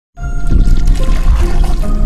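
Loud intro music with a water-pouring and splashing sound effect, starting suddenly a moment in.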